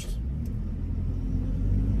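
Delivery box truck's engine and road noise heard inside the cab: a low rumble that grows steadily louder as the truck gathers speed.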